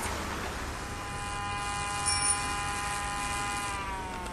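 Electric motor whine of a Segway personal transporter: a steady high whine that glides down in pitch near the end as it slows, over low street rumble.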